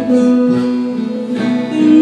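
Live music from a small acoustic band, with a strummed acoustic guitar to the fore and steady held notes.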